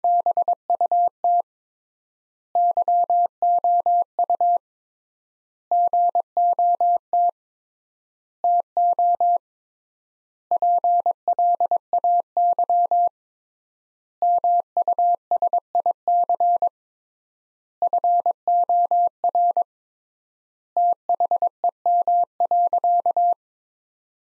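Computer-generated Morse code: a single steady beep keyed on and off at 22 words per minute, in eight word-groups separated by long pauses (three times the normal word spacing). It is the repeat of the practice sentence "But you got to play music for them."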